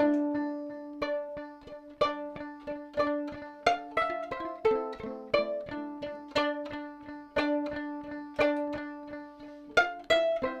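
Violin played pizzicato: a quick, steady run of plucked notes, several a second, each ringing out briefly over a repeated lower note.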